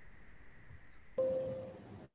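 Faint steady hiss with a thin high whine on the video-call audio line. About a second in comes a click, then a short single tone that fades out.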